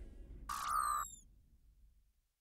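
A short synthesized logo sting, about half a second long: a steady mid-pitched tone with a high zing that glides down, after the music's tail fades. It then dies away.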